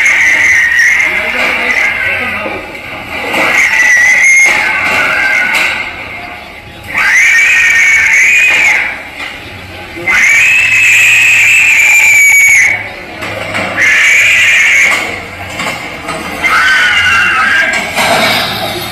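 Recorded animal screaming played loudly through a portable loudspeaker: about six long, shrill cries, each a second or two long, with short gaps between them.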